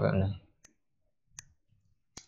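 Two faint single clicks of a computer mouse, about three quarters of a second apart, after the end of a spoken phrase.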